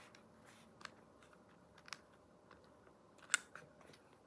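A child chewing pizza close to the microphone: faint mouth sounds broken by three short, sharp clicks, the loudest a little before the end.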